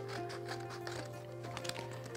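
Quiet background music with held notes, over a run of small, quick snips from scissors cutting through construction paper.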